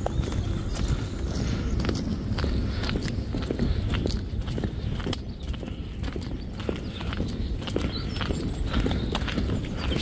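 Footsteps on a paved footpath: short, irregular clicks of shoes over a steady low rumble.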